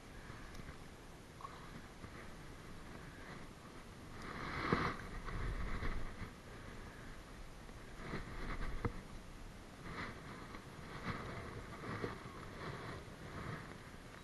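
Spinning reel being cranked, with rod and line handling noise, as a hooked tautog (blackfish) is reeled up and lifted from the water. Louder rustling comes in stretches, first about four seconds in, with a few sharp clicks.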